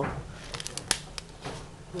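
Paper pages of a handmade journal being handled and turned: a soft rustle with a few sharp ticks and crackles around the middle.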